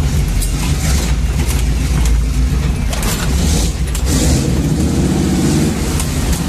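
350 Chevy V8 of a 1979 Jeep CJ-5 running under load, heard from inside the cab as a deep, steady rumble. About four and a half seconds in, the engine note shifts higher.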